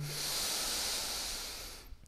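A man taking one long, deep breath in: a steady hiss of drawn air that fades away near the end.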